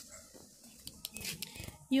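A quiet pause with faint outdoor background noise and a few soft rustles and clicks from a handheld phone being moved, then a woman's voice starts right at the end.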